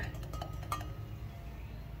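Low steady background hum with a few faint light clicks.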